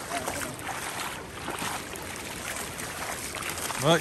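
Shallow river water sloshing and splashing as a person wades through it in rubber boots, with a hooked salmon thrashing at the surface near the end.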